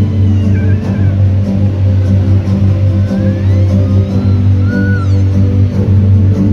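Music with a heavy, steady bass and a high melody line that glides up and down.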